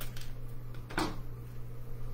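Scissors cutting cardstock: a sharp snip about a second in, with a fainter one near the start.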